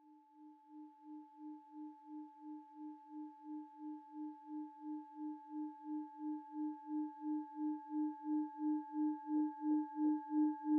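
Singing bowl sounding a steady high ringing tone over a lower hum that pulses about three times a second, swelling steadily louder.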